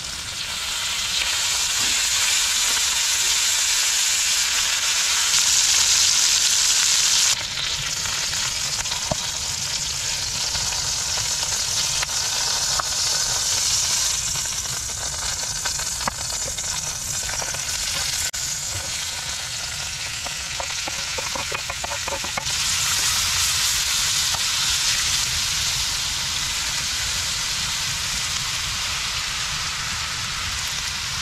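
Food sizzling as it fries in hot oil: chicken pieces searing in a pan, then diced onion and yellow bell pepper stir-fried in a cast-iron Dutch oven with a wooden spatula. The steady sizzle changes level abruptly a few times.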